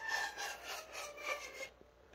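Homemade pan flute of three-quarter-inch PVC tubes, open at both ends, blown across the tops: a few airy notes at changing pitches, more breath hiss than tone, stopping near the end.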